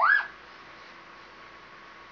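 A child's short, high squeal that sweeps sharply up in pitch and falls away within about a third of a second.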